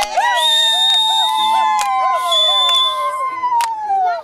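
Group of women singing with hand claps; one voice holds a long high note through most of it, rising slightly and then sliding down near the end, while other voices move in short phrases underneath.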